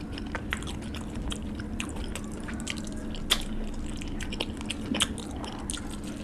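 Close-miked chewing and wet mouth sounds of a person eating rice and curry by hand, with many sharp clicks and smacks. The loudest snaps come about three and five seconds in.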